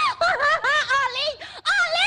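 A woman's high-pitched voice crying out in a quick run of short, shrill, rising-and-falling cries, a comic wail of distress.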